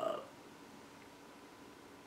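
The drawn-out end of a man's hesitant "uh" in the first moment, then quiet room tone with a faint steady hum.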